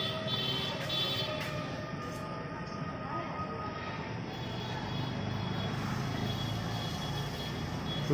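Steady street noise from a running motor vehicle, with a few faint steady tones held over it.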